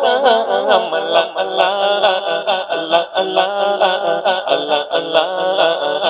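Male voice singing a naat, an Islamic devotional song, in long wavering melismatic phrases.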